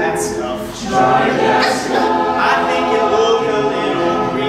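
Male a cappella group singing in close vocal harmony, holding sustained chords.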